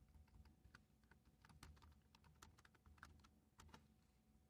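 Faint computer keyboard typing: a run of irregularly spaced keystrokes as a line of code is entered.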